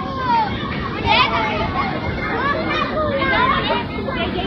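Crowd of adults and children chattering, many voices overlapping at once with high children's voices among them.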